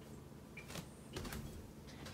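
Quiet room tone with a low hum and a few faint clicks and knocks.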